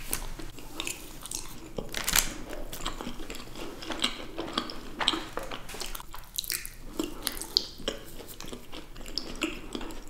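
Close-miked chewing and biting of mini ice cream sandwiches: soft chocolate wafer and ice cream, with many irregular, sticky mouth clicks.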